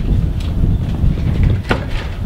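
Wind buffeting the microphone: a steady, rough low rumble. Near the end there is one short knock as the wooden rack is handled.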